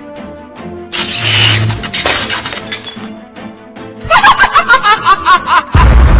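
Cartoon sound effects over background music: a loud glass-like shatter about a second in that crackles away over the next two seconds, a high quick warbling sound later on, then a low boom just before the end.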